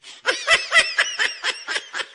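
A person laughing in a rapid run of short, high-pitched giggles, about four a second.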